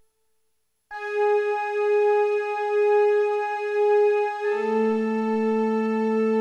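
Electronic keyboard music: after a moment of silence, a single steady, slightly wavering note comes in about a second in and is held. A second, lower note joins about halfway through, and both sound together.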